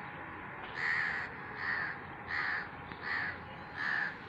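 A bird giving five harsh calls in a row, about one every three-quarters of a second.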